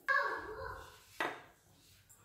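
A glass mixing bowl knocked and ringing briefly as it fades, then a second knock about a second later.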